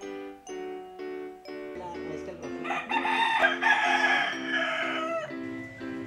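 A rooster crowing once, a long call from about three seconds in to about five seconds in, over background music with evenly spaced notes.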